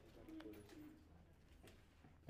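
Near silence: room tone, with a few faint clicks and a brief faint low hum about half a second in.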